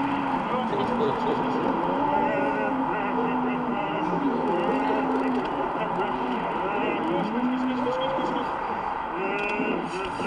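A man imitating a bull's sounds to make a cow prick up its ears: a string of drawn-out, low, voiced calls, each under a second, over steady background noise.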